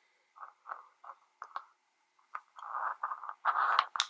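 Hands handling a micro FPV quadcopter frame: a run of short scrapes and small clicks, then longer rubbing and scraping in the second half.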